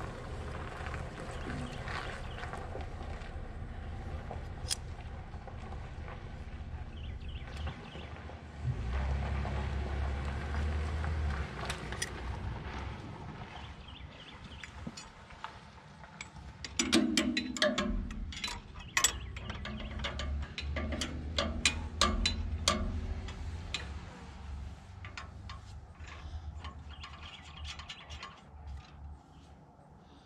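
A low wind rumble on the microphone, then from about halfway through a run of sharp metallic clanks and clicks from hand tools and a wrench working on the Krone Big Pack baler's knotter assembly.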